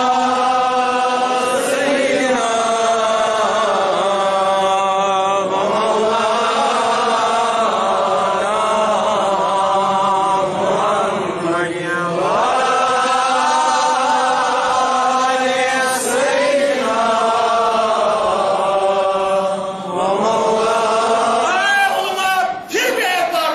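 A man's voice chanting a slow melodic religious recitation, holding each note for a second or two, sliding between notes and wavering on them.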